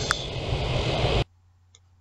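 Steady open-air background hiss with a single sharp click just after the start; it cuts off suddenly a little over a second in, leaving near silence with a faint low hum and a couple of faint ticks.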